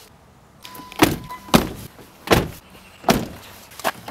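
Car doors being shut one after another, about five separate thunks in four seconds.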